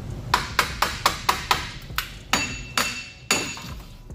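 A hammer striking a 2012 Chevy Equinox's rear wheel hub bearing assembly to knock it out of the knuckle: about ten sharp metal-on-metal blows in quick, uneven succession. The later blows ring briefly.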